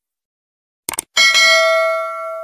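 A short mouse-click sound effect, then a loud bell ding about a second in that rings on and slowly fades. These are the stock sounds of a YouTube subscribe-button and notification-bell animation.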